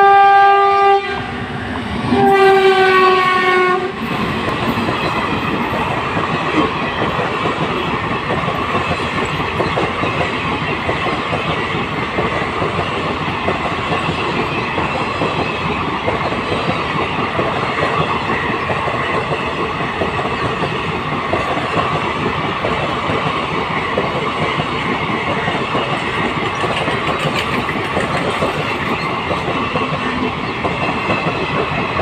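Indian Railways electric locomotive sounding its horn in two blasts of about a second and a half each, the second dropping slightly in pitch. Then a fast goods train of parcel vans rolls past close by, with a steady loud rumble of wheels on rail and clickety-clack over the rail joints.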